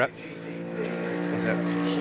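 Trackside sound of GT race cars' engines running at a steady, held note as a Porsche and two Lamborghini GT3 cars go through a fast downhill curve.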